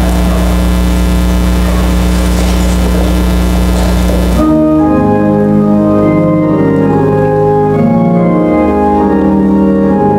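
A loud steady electrical hum, then about four and a half seconds in a church organ starts playing sustained chords: the introduction to the closing hymn.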